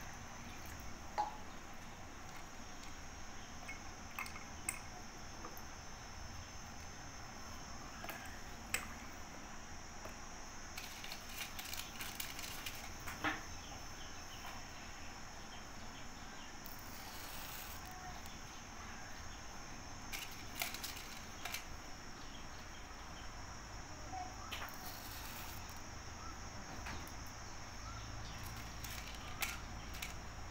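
Insects, crickets by the sound of it, keeping up a steady high-pitched chirring drone, with a few scattered sharp little clicks over it.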